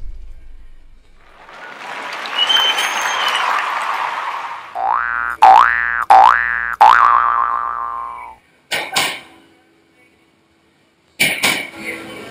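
Edited-in sound effects: a swelling whoosh, then three quick springy sweeps rising in pitch, then two short clicks.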